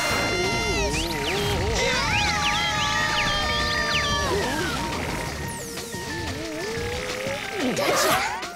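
Cartoon music score mixed with cartoon sound effects: wavering, gliding whistle-like tones, with a sweeping glide near the end.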